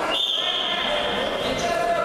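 Referee's whistle blown once, a single steady high-pitched blast of just over a second, signalling the start of wrestling action.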